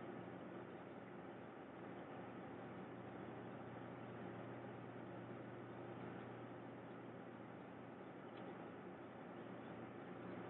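Faint steady room tone: an even hiss with a low hum underneath, and no distinct events.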